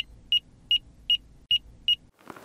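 Short, high electronic beeps repeating evenly, six in all at about two and a half a second, over a faint low hum.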